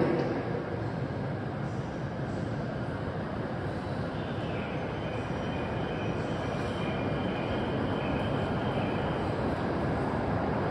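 A Shinkansen train pulling slowly into an underground station platform: a steady rumble that grows slightly louder as it rolls in, with a faint high whine joining about halfway through.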